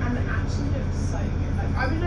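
VDL DB300 double-decker bus engine running steadily as the bus drives along, a constant low drone heard inside the upper deck, with indistinct voices of people talking over it.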